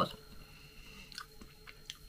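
Faint close-up chewing of food, with a few small wet mouth clicks in the second half.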